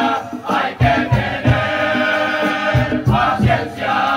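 A large male murga chorus singing loudly together with drum beats underneath, holding a long chord through the middle.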